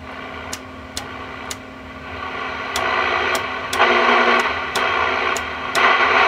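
Radio receiver static hissing from a speaker, passing through the Palomar 90A amplifier's receive preamp. It swells louder twice, over a steady low hum and a faint tick about twice a second.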